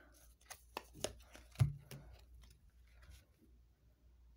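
Rider-Waite tarot cards being drawn from the deck and laid down on a cloth-covered table: a quick series of soft snaps and taps of card stock in the first two seconds, then quiet handling.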